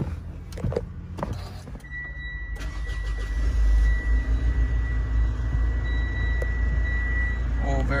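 2018 Mitsubishi Pajero Sport's 2.4-litre four-cylinder turbo-diesel started with the push-button start about two and a half seconds in. It flares briefly, then settles to a steady idle. A steady high tone sounds from just before the engine catches until near the end.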